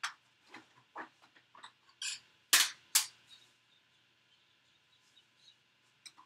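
A series of sharp clicks and knocks from someone rummaging through craft supplies, with the two loudest about two and a half and three seconds in.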